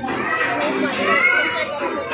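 Children shouting and chattering among a crowd of voices, several raised voices overlapping.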